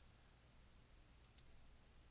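Near silence, broken by two short faint clicks at a computer a little over a second in.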